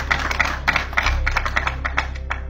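A quick, irregular run of sharp clicks over a steady low hum.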